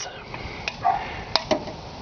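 A few sharp light clicks, about three over the second half, as a metal dial thermometer is handled against the rim of a steel pot, with a brief hummed voice sound about a second in.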